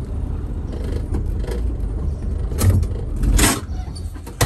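Mercedes-Benz 307D's four-cylinder diesel engine running with a low, steady rumble as the van rolls slowly over gravel, heard from inside the cab. Two short noisy rustles come near the end, the second the louder.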